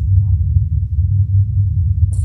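A steady low rumble, with no speech over it.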